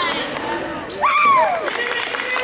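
Basketball game sounds on a gym's hardwood floor: ball bounces and short knocks echoing in the hall, with one loud drawn-out shout about a second in, its pitch rising then falling.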